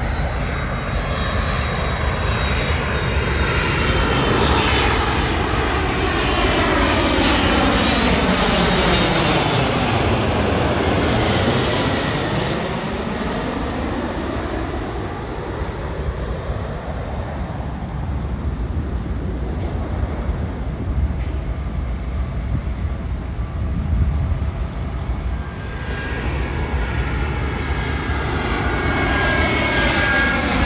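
Twin-engine jet airliners on landing approach passing low overhead. The engine sound builds to its loudest as the first jet goes over about ten seconds in, its whine falling in pitch, then fades as it moves away. A second airliner's engines build again near the end.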